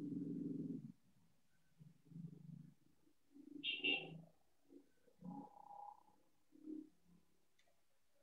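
Faint, indistinct voice sounds over a Zoom call: a held voiced sound in the first second, then several short murmured bursts spread through the rest.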